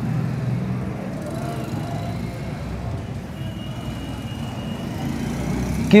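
A steady low rumble of background noise with no clear events in it, of the kind that traffic outside a room makes.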